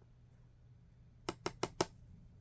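Near silence, then about five light, sharp clicks in quick succession over half a second from a plastic glue pen being handled against a plastic acetate sheet.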